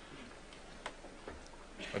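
A pause in a man's speech in a hall: quiet room tone with a single faint click a little under a second in, and the man's voice coming back in near the end.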